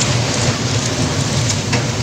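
Loud, steady rumbling noise with a hiss, from wind buffeting the phone's microphone.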